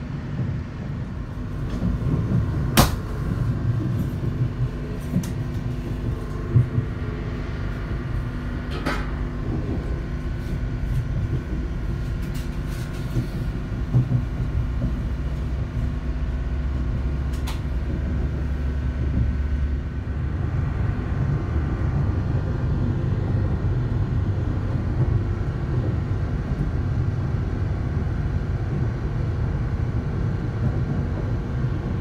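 Steady low rumble of a moving passenger train heard from inside the carriage, with a few sharp clicks and knocks along the way.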